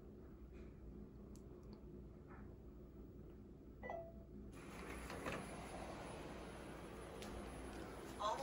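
iLife A10 robot vacuum being started for a cleaning run: a short electronic chirp about four seconds in, then its suction fan and brushes running with a faint, steady noise.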